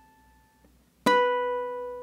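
Ukulele harmonics practised slowly, one at a time: a plucked harmonic rings out and fades almost to nothing, then about a second in the next one is plucked sharply and rings on. That second attempt is a miss: it doesn't sound as a clean harmonic.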